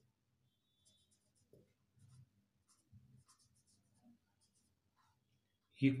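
Faint scratching of a marker pen writing words on paper, in short, irregular strokes.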